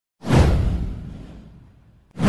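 Swooshing intro sound effect: a sudden whoosh with a deep bass hit, sweeping down in pitch and fading away over about a second and a half.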